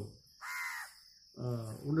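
A crow cawing once, a single call of about half a second that drops in pitch at its end.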